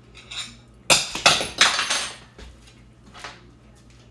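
A metal fork clinking and scraping against a ceramic plate, three or four sharp strikes between about one and two seconds in and a fainter one near the end.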